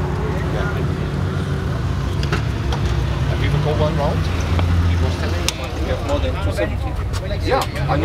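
A car engine idling steadily, a little louder around the middle, under indistinct voices.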